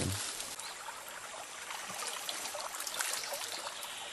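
Water trickling steadily in a small stream of fresh drinking water.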